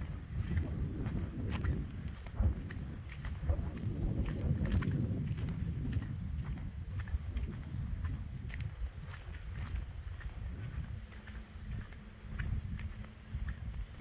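Wind buffeting the microphone of a handheld camera, a gusty low rumble that eases somewhat near the end. Light scattered ticks and steps from the person walking along the paved road.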